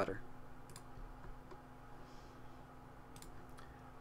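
Several faint computer mouse clicks, scattered across the few seconds, over a steady low hum.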